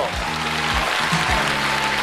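A theatre audience applauding over music with a steady low beat.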